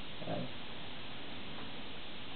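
Steady low hiss of room tone, with one short, quiet spoken word just after the start.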